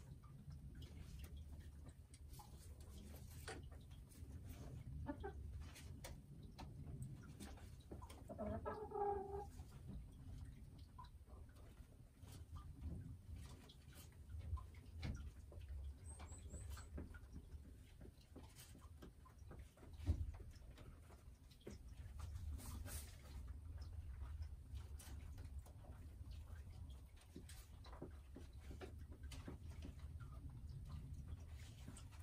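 A hen gives one short clucking call about nine seconds in, over faint scattered rustles and clicks; a single sharp tap about twenty seconds in is the loudest sound.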